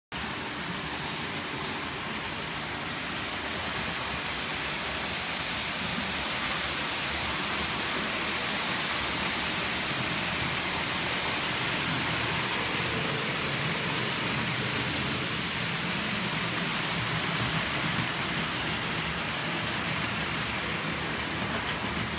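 OO gauge model train running on the layout's track, a steady rolling noise of wheels on rail with the motor's hum.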